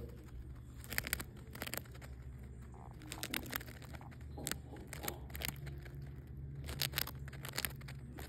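Hamster nibbling a potato chip: small, irregular crunches and crackles, sometimes in quick runs of several, over a low steady hum.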